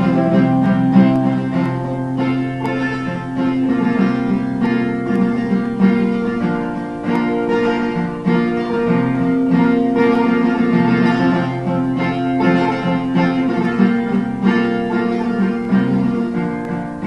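Acoustic guitar played solo, a run of chords ringing and changing every second or two, with no singing.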